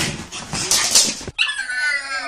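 Staffordshire bull terrier making noisy, breathy sounds, then a high whine that falls in pitch.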